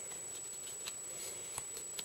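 Faint handling of a cardboard-and-duct-tape sheath: a few soft ticks as fingers work the taped handle loop, over a steady low hiss with a thin high whine.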